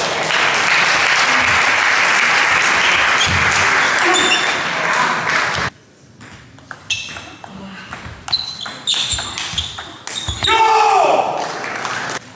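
A loud, steady rush of noise that cuts off suddenly about halfway. Then a table tennis rally: the celluloid ball clicks sharply off bats and table several times a second, and near the end comes a shout with a falling pitch.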